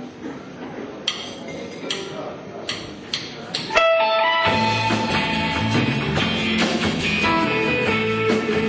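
A few sharp ticks, then about four seconds in a live instrumental surf-rock band comes in loud: electric guitars over bass and drums.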